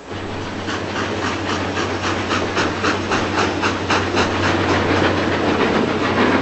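Train running, its wheels clattering over the rails in a steady rhythm of about four or five beats a second over a low rumble; it starts suddenly.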